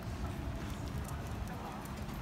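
Footsteps of a person and a dog walking on pavement, with faint scattered clicks, over a steady low rumble.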